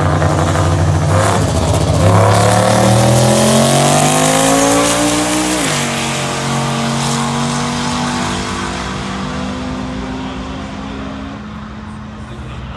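Two street cars' engines in a roll race, held at a steady note and then opened up to full throttle. The pitch rises for several seconds, drops suddenly about six seconds in, then climbs slowly again and fades as the cars pull away down the track.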